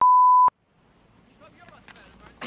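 A TV test-card tone: a single steady, high electronic beep of the kind that accompanies colour bars, lasting about half a second and cutting off abruptly. It is followed by faint outdoor ambience.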